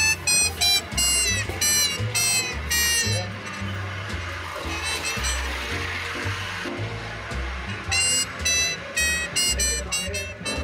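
Jazz music: a bass line stepping from note to note under a bright lead instrument playing short phrases, the lead dropping out for a few seconds in the middle and coming back near the end.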